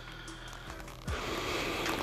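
Faint background music. From about a second in, a steady rustling hiss of clothing rubbing against a clip-on microphone as the wearer moves.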